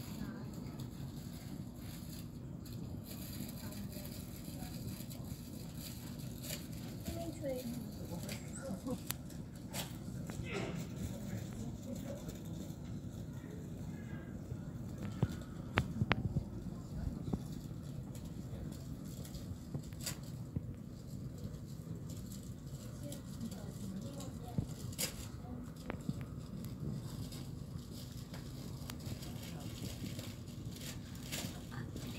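Indoor ambience of an airport terminal lounge heard through a phone microphone: indistinct background voices over a steady low hum, with occasional sharp clicks.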